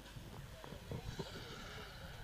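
Faint, indistinct voices in the background with scattered light knocks and clicks, and a brief soft hiss starting about a second in.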